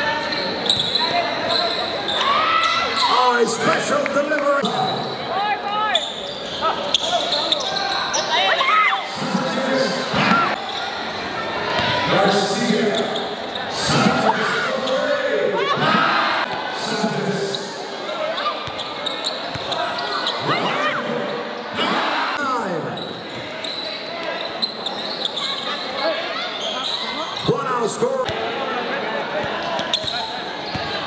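Game sounds of basketball in a large gymnasium: a ball bouncing repeatedly on the court, with players and spectators calling out and an echo of the hall.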